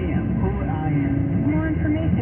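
A radio broadcast voice playing over the car's speakers inside the moving car, over a steady low rumble of engine and road noise.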